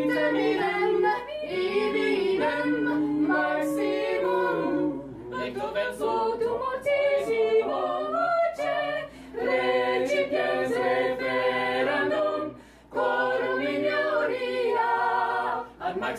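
Mixed-voice a cappella ensemble of women and men singing in several parts, holding chords that shift from one to the next, with a brief break about thirteen seconds in.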